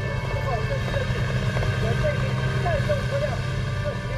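Tanks and tracked armored personnel carriers driving, with a steady low engine and track rumble and short, higher squeals on top.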